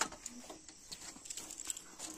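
Traditional wooden handloom (khaddi) in use for weaving woollen cloth, giving irregular light wooden clicks and knocks from its moving parts as the weaver works it.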